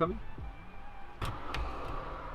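A few light clicks from the van's hinged side window and its stay arms as it is pushed open, over a low hum and faint background music. The clicks are the newly replaced stay part catching in the open position.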